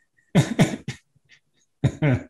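A person laughing in short bursts: two quick laughs about a third of a second in, a fainter one near one second, and another just before the end.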